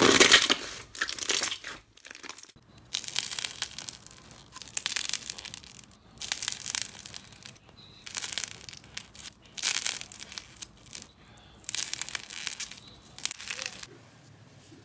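Hands pressing and squeezing slime, giving repeated short bursts of crackling and popping, one every second or two, with quieter gaps between.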